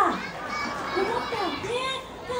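People's voices: a voice falling sharply in pitch at the start, then quieter talking with children's voices among it.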